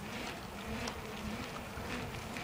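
A steady low hum with faint, irregular scuffs over it, the sound of a phone microphone carried by someone walking on pavement.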